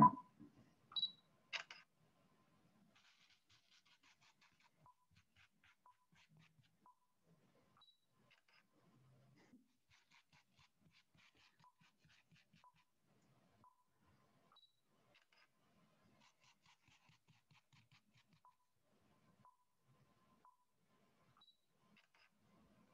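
Mostly quiet, with two short clicks about a second in. Then come faint, scattered scratchy rustles of hands moving sand around a paper cutout.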